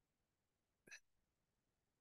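Near silence, broken once, just under a second in, by a single brief, faint sound.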